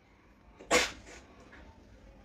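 A man's single short, sharp breath about three quarters of a second in, followed by a fainter one.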